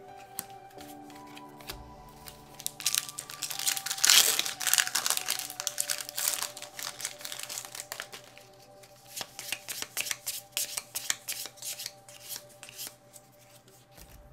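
Foil wrapper of a Magic: The Gathering booster pack being torn open and crinkled, loudest about four seconds in, followed by lighter crackling and card handling. Background music plays underneath.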